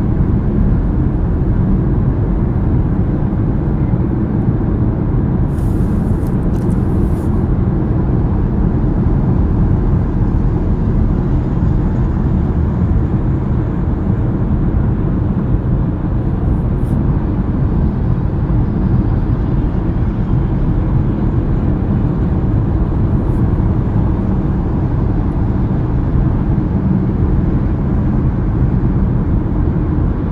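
Steady low rumble of tyres and engine heard inside a car's cabin while it drives at highway speed.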